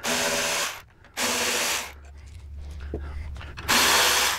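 Power driver spinning a quarter-inch hex socket to back out the handlebar clamp bolts, in three short runs of under a second each, the last one near the end.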